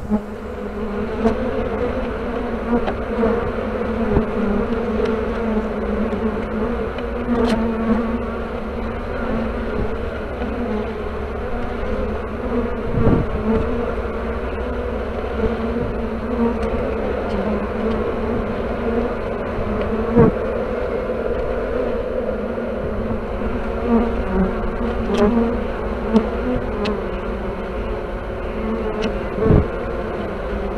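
A crowd of honeybees buzzing right at the microphone as they crawl through the perforated grid of a hive's pollen trap: a dense, steady hum. A few soft knocks sound along the way.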